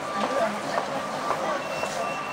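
Electronic beeps at one steady pitch, sounding on and off, over general street noise with passers-by talking.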